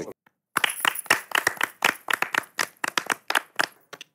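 A small seated audience clapping: distinct, quick hand claps at about six a second, starting about half a second in and stopping right at the end.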